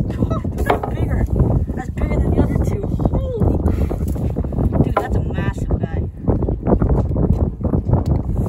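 Strong wind buffeting the microphone, a loud low rumble that rises and falls with the gusts.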